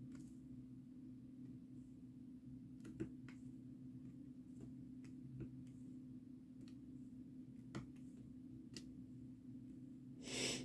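Faint, irregularly spaced small clicks of a diamond painting drill pen picking up resin drills and pressing them onto the canvas, about one a second, with one a little louder about three seconds in. A steady low hum runs underneath.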